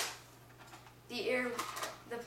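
A single sharp plastic click from a modified ERTL pump-action dart blaster right at the start, dying away quickly, followed by a few faint ticks. A short bit of voice comes in about a second in.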